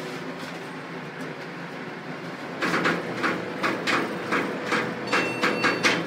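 Montgomery Kone elevator car setting off downward: a steady low hum, then from about halfway an irregular run of rattling, clattering knocks as the car shakes in motion.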